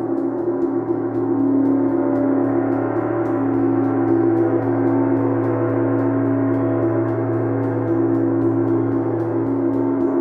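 Chau gong played with two felt mallets in soft, continuous strokes, building a sustained, steady wash of overlapping tones over a low hum, with no single strike standing out.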